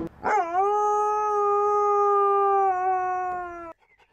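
A dog's single long howl, held at a nearly steady pitch for about three seconds, then cut off abruptly.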